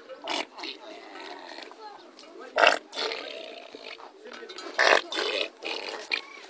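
Cattle sounds: a continuous rough animal sound with several short, harsh bursts, the loudest about two and a half and five seconds in, over people's voices.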